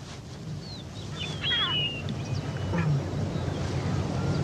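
A few short, high animal calls with gliding, falling pitch, about a second or two in, over a steady low outdoor background.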